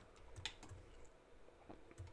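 A few faint, scattered clicks of computer keyboard keys being pressed, over near-silent room tone.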